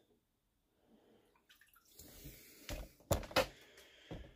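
Water swishing and dripping as a hand reaches into a small glass tank to pick out a boilie, with a couple of sharp, louder bumps near the end.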